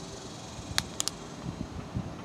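A few short crackles from the plastic wrapper of a trading-disc pack as it is handled, over a steady background hum.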